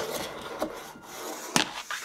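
A small wooden cylinder is handled on a hard tabletop. A few sharp wooden knocks, the loudest about a second and a half in, have light rubbing and scraping between them.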